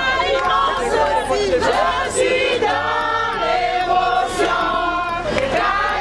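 A crowd of wedding guests singing together in chorus, many voices at once with high held notes.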